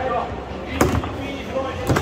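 Foosball being struck by the rod figures and knocking against the table, two sharp cracks about a second apart.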